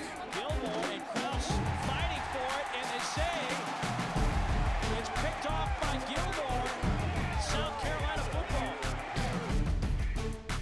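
Background music with a steady beat, its bass coming in strongly about four seconds in, with voices mixed in.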